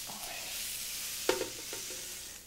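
Sautéed vegetables, carrots and celery among them, sizzling in a hot frying pan as they are stirred and scraped out with a spatula into a stockpot. A short knock sounds about two-thirds of the way through.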